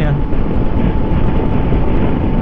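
Kawasaki Versys 650 motorcycle at a steady highway cruise of about 90 km/h: the parallel-twin engine running under a heavy, even rush of wind and road noise on the microphone.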